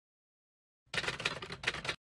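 Silence for about the first second, then a second of noisy stadium ambience from the football match broadcast, uneven and crackly, cut off abruptly at the end.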